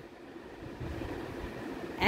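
Faint, steady background noise, with a pencil being drawn across notebook paper as a cursive capital letter is written.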